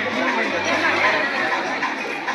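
Many people talking at once: the steady chatter of diners at nearby tables, with no single voice standing out.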